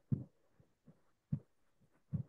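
A few soft, dull thumps at irregular spacing, two strong and one faint in two seconds.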